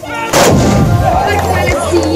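A tbourida troupe's black-powder muskets (moukahla) fired together in one loud volley about a third of a second in, followed by a rolling rumble.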